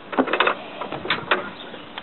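Metal fork latch of a galvanised chain-link gate being worked open and the gate pulled back: a few short metallic clanks and rattles, a cluster near the start and two more about a second in.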